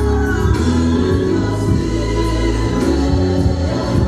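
Gospel music with a choir singing over a full band, with sustained bass notes; it accompanies a praise dance.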